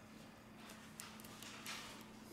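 A few faint fingertip taps and light clicks on an opened smartphone's internals as the battery and its flex connector are pressed into place, with a short rubbing sound near the end, over a faint steady hum.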